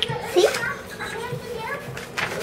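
A child's voice speaking indistinctly, loudest about half a second in.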